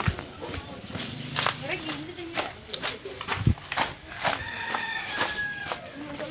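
Footsteps on a gravel path, with voices in the background.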